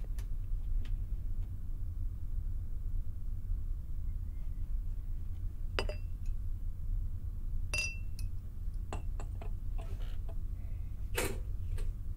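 Glassware clinking: crystal tumblers and a decanter being handled, with a few sharp clinks, the clearest just past halfway ringing on briefly and another near the end. A steady low hum runs underneath.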